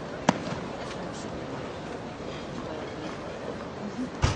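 A single sharp knock of a tennis ball about a third of a second in, over a steady low background murmur of the court and crowd.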